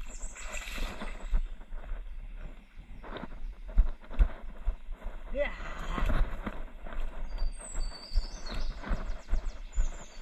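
Footsteps of someone walking along a grassy field bund, picked up by a body-worn action camera as irregular thumps with a steady low rumble from wind and handling. A few high chirps come near the end.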